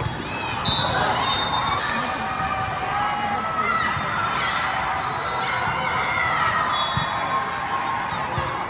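Indoor volleyball game in a large, echoing hall: a constant mix of player and spectator voices, with dull thuds of the ball being played and short high-pitched squeaks. A sharp, loud burst just under a second in stands out above the rest.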